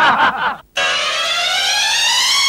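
A synthesized sound effect: a buzzy electronic tone, rich in overtones, gliding slowly and steadily upward in pitch, starting just under a second in after a short noisy sound cuts off.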